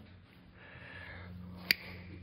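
Small nippers snipping through the end of an LED strip: one sharp click near the end.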